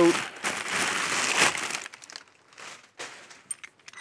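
Packing paper crinkling and rustling as it is pulled out of a cardboard box, dying down after about two seconds to quieter handling with a few light clicks.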